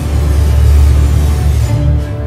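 Horror film soundtrack music with deep, sustained low notes and held tones above them; the hiss on top thins out near the end.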